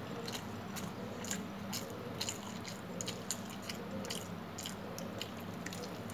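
Close-up eating sounds: chewing a mouthful of rice and chicken curry, with frequent short, sharp mouth clicks, a few per second, over a steady low hum.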